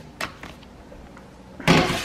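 A plastic meal-prep tray being loaded into a microwave: a light click shortly after the start, then a louder, short clatter near the end as the tray goes onto the turntable and the microwave door is handled.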